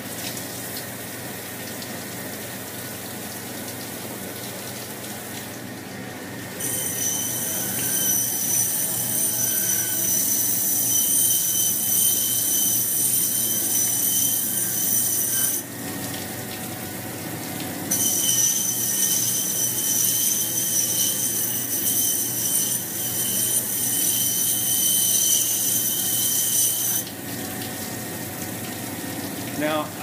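A water-fed sander's 600-grit diamond wheel runs with water pouring over it. Twice a stone carving is pressed against the wheel for about nine seconds at a time, and the sound turns loud with a high grinding whine. The wheel is sanding the high spots of a sandblasted surface to bring up highlights.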